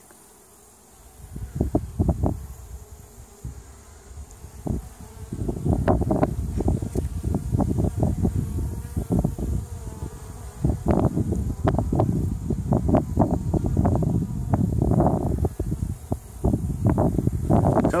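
Honey bees buzzing close to the microphone at a hive's entrance feeder, mixed with bumps and rustles as the phone is moved under the feeder. Quieter for the first few seconds, louder from about five seconds in.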